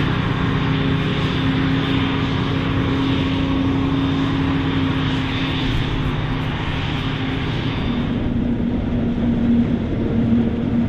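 Claas Jaguar 950 forage harvester running under load while chopping maize, a loud steady drone with a humming tone, mixed with the tractor pulling the trailer alongside. About eight seconds in the sound turns duller as the machines are heard from farther off.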